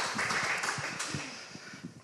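Applause from a small audience of about eighteen people, dense clapping that fades steadily and has nearly died away by the end.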